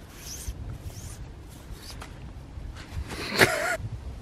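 A zip being worked on a nylon hammock's bug net, with fabric rustling, in a few short strokes. A louder, longer rasp comes about three seconds in.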